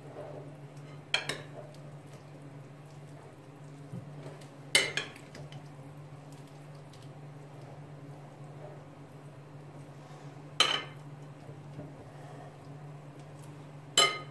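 A metal spoon stirring dressed boiled radish greens in a ceramic bowl. It is mostly soft, with a sharp clink of spoon on bowl about every few seconds (three in all) and one more at the very end as the spoon is laid on the bowl's rim. A steady low hum lies underneath.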